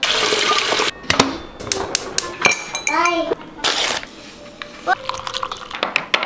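Tap water running into a stovetop kettle for about the first second, then scattered light clinks and knocks of kitchenware, with another short rush of water a little after halfway.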